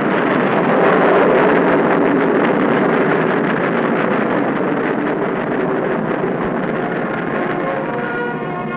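Rocket engine roaring at liftoff, a loud dense rushing noise that eases off slowly. It sounds dull and lacks treble, as on an old film soundtrack.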